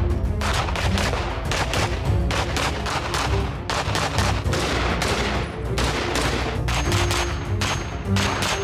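Rapid strings of gunshots from a handgun and a rifle, many shots in quick succession, mixed with background music that has a steady bass.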